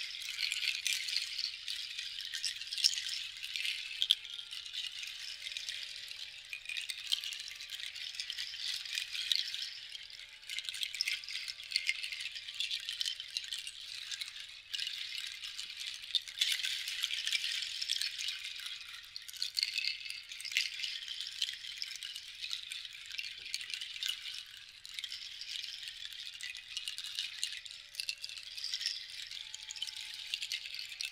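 A long cord of strung dried seed-pod rattles shaken and swirled by hand, a continuous dry clatter that swells and eases in waves every few seconds.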